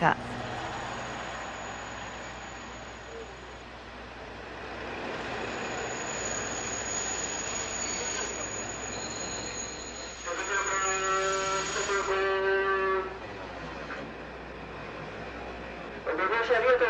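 Train standing at a railway platform: steady running noise with a thin high whine. About ten seconds in, a steady pitched tone sounds for roughly three seconds.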